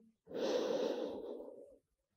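A woman's deep, audible breath in, a breathy rush lasting about a second and a half that fades away.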